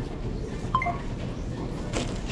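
A short electronic beep about a second in: a phone scanning the barcode label on a grocery order bag. Under it runs a steady low background rumble.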